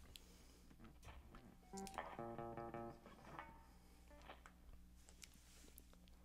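Electric guitar played softly: a few quiet notes and a brief ringing chord about two seconds in, over a faint steady low hum.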